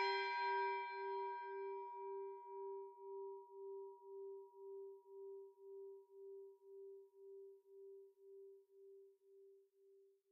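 The long ring-out of a single struck bell, dying away slowly over about ten seconds with a steady wavering pulse about twice a second. The bright upper overtones fade within the first couple of seconds, leaving one steady tone.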